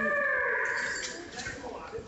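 A woman's voice drawing out words of praise, fading about a second in into quieter room sound with a few faint soft knocks.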